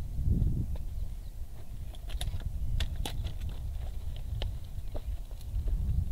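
Scattered light clicks and knocks from a folding seat stick as it is sat on, with tools being handled, over a steady low wind rumble on the microphone.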